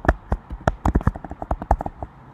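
Computer keyboard being typed on quickly: a fast, uneven run of sharp key clicks, about eight a second.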